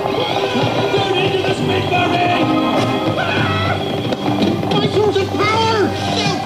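Film soundtrack: busy music with voices crying out and shouting over it.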